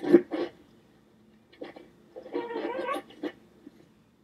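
Sharp knocks in the first half-second, then a short, high-pitched, whiny cry with a wavering pitch a little after two seconds in, ending with another knock.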